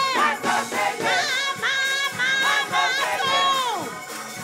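A woman singing gospel into a microphone, holding and sliding her notes with a long falling note near the end, over church organ, with the congregation's voices behind her.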